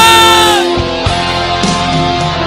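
A male singer holds a long sung note over rock backing music. The note sags slightly in pitch and ends under a second in, and the backing plays on.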